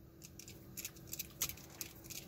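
Small screwdriver turning a screw through the LM317 regulator's tab into its heat sink on a kit circuit board: faint scattered clicks and scrapes, more frequent from about a second in.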